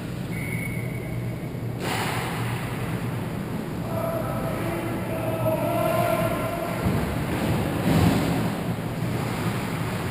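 Steady ambient noise of an indoor ice hockey rink during play, with a constant low hum and a broader hiss, and a few faint held tones in the middle from the play at the far end.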